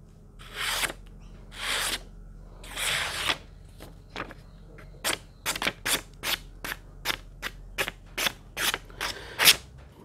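Folding knife's 420 stainless steel blade slicing a sheet of paper in a sharpness test: three long slicing strokes in the first few seconds, then a quick run of short cuts, about three a second.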